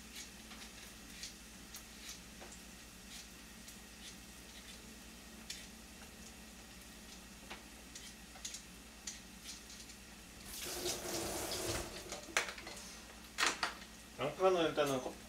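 Faint, scattered crackles from a fried egg finishing in a pan on the residual heat of a switched-off gas burner. About ten and a half seconds in comes a louder rush of running tap water lasting a second or two, then a couple of knocks.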